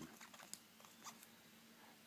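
Near silence with a few faint ticks and light squeaks from a New Trent IMP63 stylus's micro-knit tip writing on an iPad's glass screen.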